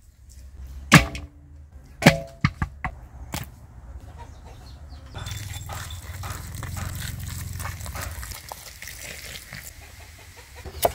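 Steel cleaver chopping through raw chicken on a wooden chopping block: about five hard strokes in the first few seconds, the first two the loudest, with a brief metallic ring. From about five seconds in, beer pours from a bottle and splashes steadily into a metal basin over the chicken.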